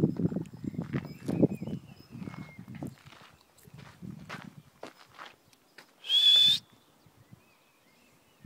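Footsteps crunching on a gravel path for the first few seconds, with faint bird chirps. About six seconds in, a short, loud, high-pitched squeal.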